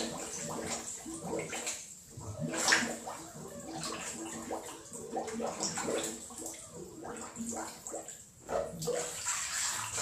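Water sloshing and gurgling in irregular surges, with air bubbling up as a person counts under water. It is loudest about three seconds in.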